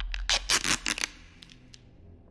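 Adhesive tape pulled off a roll in five or six quick rips in the first second, fainter rips after, over a low steady drone.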